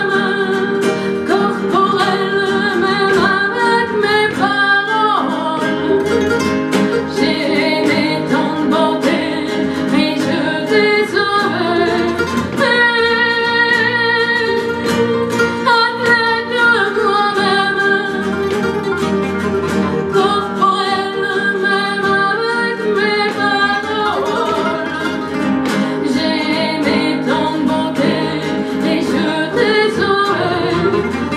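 A woman sings a song to the accompaniment of two acoustic guitars.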